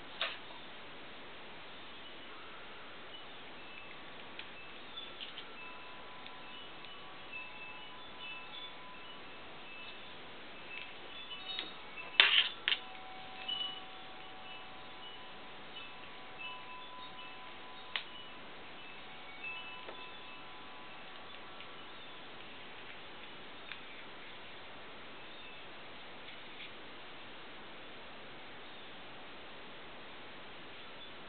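Quiet handling of a small sealed battery and alligator clip leads, a few clicks and knocks with the loudest about twelve seconds in, over faint, scattered ringing tones.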